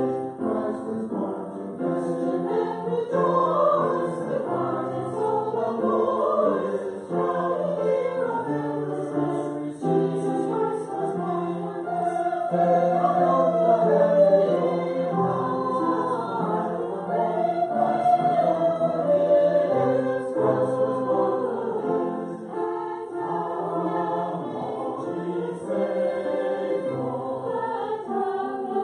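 Church choir singing in parts, with held notes moving from chord to chord.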